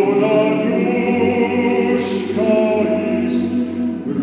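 Choir singing a slow song, the voices holding long notes, with short hissing consonants about two seconds in and again near the end.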